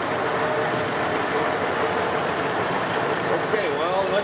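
Leblond Model NI heavy-duty engine lathe running under power, a steady mechanical hum with a faint steady tone from its gearing. A man's voice starts near the end.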